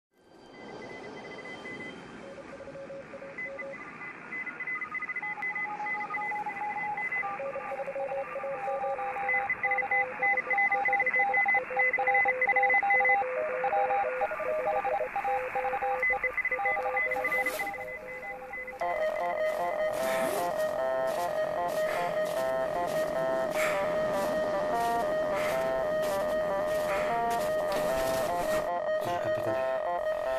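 Opening of a dungeon synth track: radio hiss fading in, with several steady beeping tones at different pitches switching on and off like radio signals. About nineteen seconds in, a louder wavering, pulsing tone takes over, with scattered clicks and crackles.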